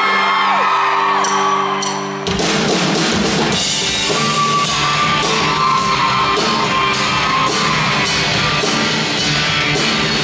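A live rock band playing: a sustained held chord opens, then about two seconds in the full band with drums comes in and plays on.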